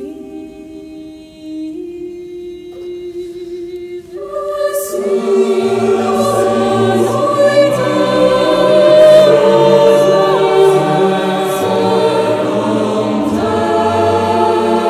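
A solo female voice sings long held notes. About five seconds in, a mixed choir enters beneath her with a low bass line, and the music becomes much fuller and louder.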